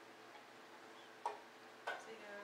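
Two light clicks about half a second apart in a quiet room, the second slightly stronger, each with a brief ring.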